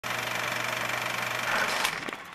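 Film projector running: a steady, rapid mechanical clatter with a low hum.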